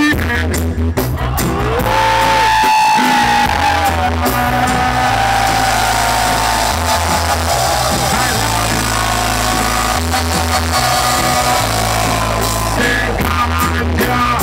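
Live reggae band playing through a concert PA: a steady repeating bass line under drums, electric guitar and keyboards.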